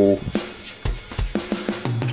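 Steady drum-kit beat: kick drum and snare hits with cymbals, about three to four hits a second.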